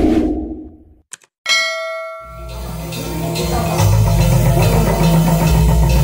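A whoosh sound effect fades out, then a single bright metallic ding rings out and dies away within a second. Music with drums and a heavy bass then starts and runs on steadily.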